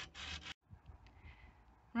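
A short rubbing, scraping noise that cuts off abruptly about half a second in, leaving faint background with a few light clicks.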